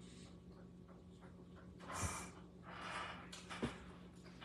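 Quiet room with a short breath through the nose about two seconds in, followed by a longer breathy exhale and a faint click.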